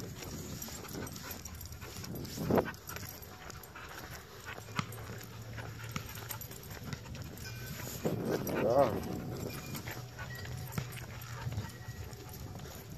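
Footsteps and a dog's movements on asphalt during an off-leash walk, with faint scattered ticks. A low steady hum runs through the middle of the stretch, and a short pitched call is heard about eight to nine seconds in.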